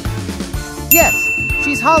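A bright ding sound effect about a second in, a single high tone that rings on for over a second over steady background music, marking the reveal of the quiz answer.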